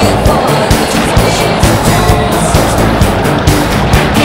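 Loud background music with a steady beat, about two beats a second.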